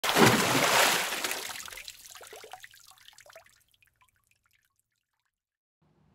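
A splash of water that fades over about three seconds into trickling and scattered drips.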